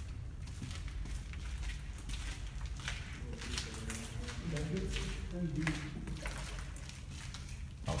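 Low, muffled voices of people talking in a concrete tunnel, strongest in the middle of the stretch, over a steady low rumble, with a few short scuffs of footsteps.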